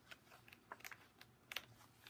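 Near silence with a few faint light clicks and paper handling as a page of an art journal is turned.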